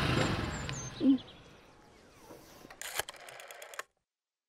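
Small motorcycle running and fading away over the first second and a half, with a short loud low tone about a second in. After a quiet stretch comes a quick run of sharp clicks from an old desk telephone being handled, and the sound cuts off abruptly just before the end.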